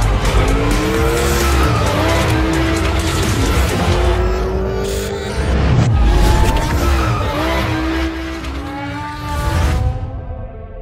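Maserati MC20 twin-turbo V6 engines revving hard, pitch repeatedly rising and falling through gear changes, with tyres squealing and skidding as the car drifts. Music with a heavy bass pulse runs underneath, and everything cuts off suddenly at the end.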